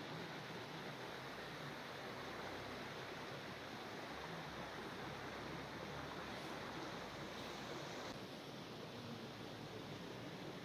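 Steady, even outdoor rushing ambience with no distinct events; its tone shifts slightly, becoming a little thinner, about eight seconds in.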